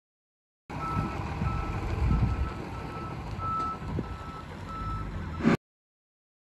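Reverse alarm of a tractor-trailer backing up, beeping steadily about twice a second over the low rumble of the truck's engine. The sound cuts in abruptly about a second in and cuts off just before the end.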